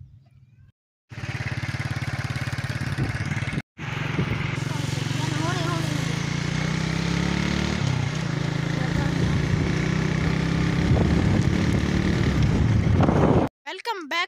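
A motorcycle engine running steadily under a loud rushing noise, its low note drifting slightly in pitch. The sound starts abruptly about a second in, breaks off for a moment near four seconds, and stops suddenly just before the end.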